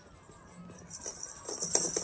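Small bell on a hat's decoration jingling in a quick, even rhythm as the hat is shaken, starting about a second in and getting louder.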